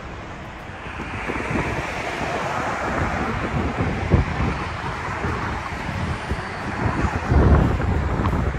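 Wind buffeting the microphone: a steady rushing with irregular low gusts, the strongest about four seconds in and near the end.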